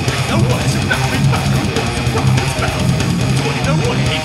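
Heavy metal band playing live: distorted electric guitars over a drum kit with rapid bass-drum strokes and cymbal hits, heard close to the kit.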